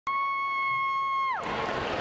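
A steady, high, buzzy electronic tone starts suddenly and holds for over a second, then dives sharply in pitch and cuts out. This is typical of the opening effect of a dance routine's music over the PA. Crowd noise from the audience follows.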